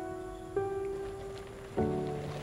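Slow, soft piano music: single notes struck about a second apart, one about half a second in and another near the end, each ringing on and fading.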